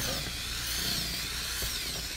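Electric drill turning a mixing paddle in a bucket of wet Venetian plaster, its motor whine wavering up and down in pitch.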